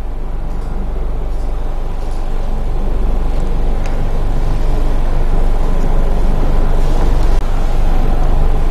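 A steady low rumble of a running machine with a faint steady whine above it, slowly growing louder, with a few light clicks.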